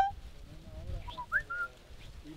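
Whistling: the end of a loud whistled note right at the start, then a few soft short notes and, about one and a half seconds in, a quick rising whistle into a short held note.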